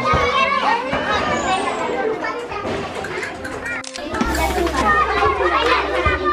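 Many children's voices at once, overlapping calls and chatter of a crowd of schoolchildren. A low rumble on the microphone comes in about four seconds in.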